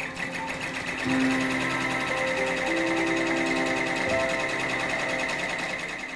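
Embroidery machine stitching at a fast, even rate, louder from about a second in, with a few held musical notes over it.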